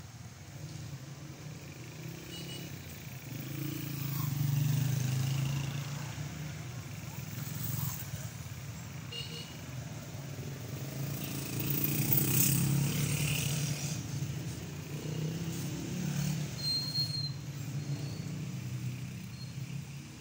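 City street traffic: car engines and tyres passing close by, swelling twice as vehicles go past, about four seconds in and again around twelve seconds in, with faint voices in the background.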